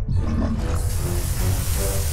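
Cartoon sound effects: a deep, continuous rumble as the building shakes, joined about half a second in by a swelling rushing noise of water bursting out, over music.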